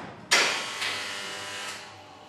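A heavy metal door slamming shut with a loud clang about a third of a second in, ringing and echoing as it fades over more than a second. A smaller knock follows just before the one-second mark.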